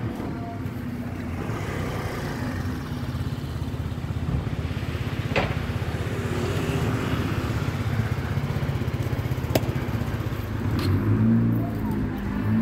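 A motor vehicle engine running close by, a steady low rumble that grows louder near the end, with a few sharp clicks along the way.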